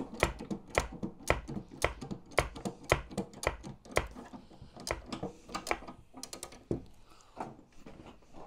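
Jack under a 1/6-scale tank hull being let down: a run of sharp clicks, two or three a second, thinning out near the end.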